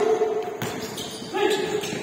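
Players' shouted calls in a large gym: one held shout at the start and another about a second and a half in. A basketball bounces on the hardwood court in between.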